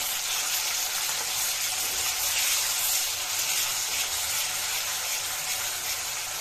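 Wet ground tomato, chilli and coriander masala paste sizzling steadily in hot oil in an aluminium kadhai as it is stirred with a metal spatula.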